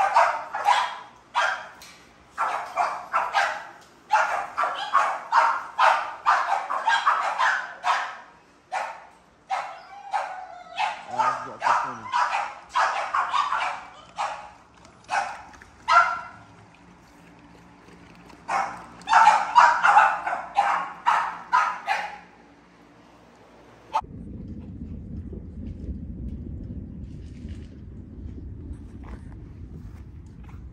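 Kennelled American bully dogs barking in rapid volleys with short pauses, the barking stopping about 22 seconds in. About two seconds later a steady low rumble takes over.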